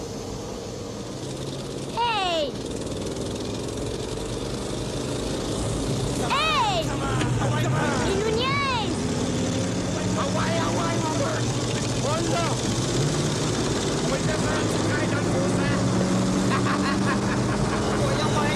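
Car engine and road noise heard from inside the cabin while driving, a steady hum that grows louder a few seconds in. Over it come several short pitched calls that rise and fall in pitch.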